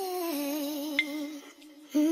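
A single voice humming a slow, wavering tune, the note stepping down about a third of a second in and breaking off near the middle. A short, sharp high click comes about a second in.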